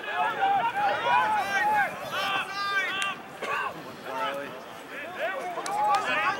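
Several voices shouting and calling out over one another during open rugby play, with a burst of high, drawn-out shouts around two to three seconds in.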